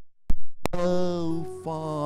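A sustained electronic keyboard chord cuts off, two sharp clicks follow, and then a man's singing voice comes in on a held note with vibrato, over keyboard accompaniment, as a slow devotional hymn resumes.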